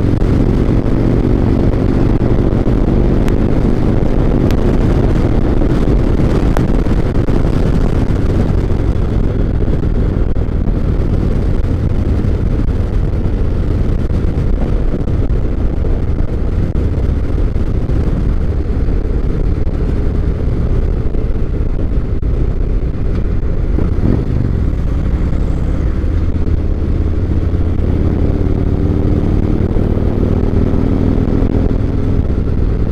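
2017 Harley-Davidson Road Glide Special's Milwaukee-Eight 107 V-twin running steadily at highway cruising speed, heard from the rider's seat with wind and road noise. The engine note firms up in the first few seconds and again near the end.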